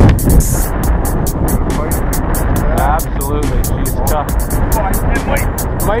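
Background music with a steady, fast beat, over wind rumbling on the microphone and faint voices.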